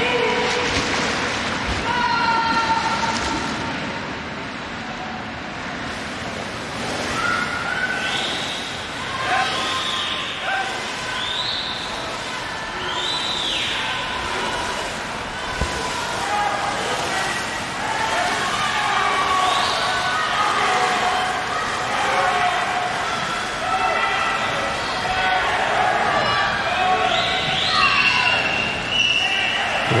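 People cheering and shouting at a swimming race, their voices rising and falling in long calls, over a steady wash of splashing water and pool-hall noise.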